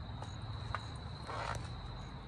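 Crickets trilling steadily in the background, one high unbroken note, with a few faint scuffs of movement.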